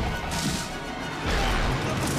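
Film sound effects of a plane's fuselage crashing through trees: metal banging and crunching over a deep rumble, in two loud surges, the second about a second and a half in, with film score music underneath.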